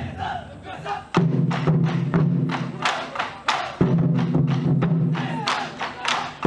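Festival drumming with a crowd: a big drum struck twice, each beat booming and ringing on for a couple of seconds, with many sharp wooden clacks and shouting voices over it.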